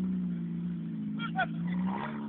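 Engine of a Honda-engined home-built off-road buggy running steadily at a distance as it drives across a field, its pitch rising slightly near the end.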